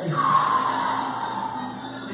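A long breath blown out, starting strong and sliding lower as it fades over about a second and a half. Soft background music with steady tones plays underneath.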